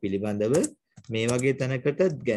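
A man speaking, with computer keyboard typing under the voice.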